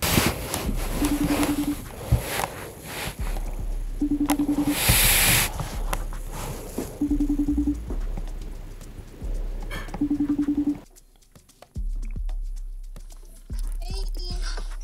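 FaceTime outgoing call ringing on a Mac: a short pulsing tone repeated four times, about every three seconds, over background music that drops out near the end.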